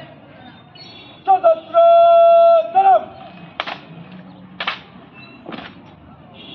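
A drill commander's long drawn-out shouted word of command, held and dropping in pitch at its end, followed by three sharp drill beats about a second apart as a squad of cadets works through a rifle drill movement in time.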